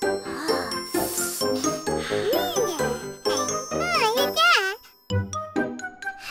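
Light children's cartoon background music with chiming, tinkling tones. From about two seconds in, high-pitched cartoon character voices make sliding, wordless vocal sounds over it. Everything drops out for a moment about five seconds in.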